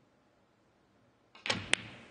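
Near silence, then a snooker cue tip striking the cue ball about one and a half seconds in. A moment later comes a sharp click as the cue ball hits the green ball.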